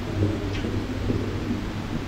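Airport terminal background noise: a steady low rumble with a faint hubbub of the concourse and a few soft bumps.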